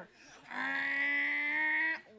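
A boy imitating a motorcycle engine with his voice: one steady, flat-pitched drone that starts about half a second in and stops just before the end.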